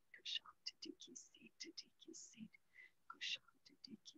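Faint whispered speech in short broken phrases with small pauses, a person murmuring prayer under their breath.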